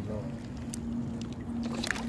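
Light clicks and rustles of a fish being worked free of a nylon gill net by hand, over a steady low hum.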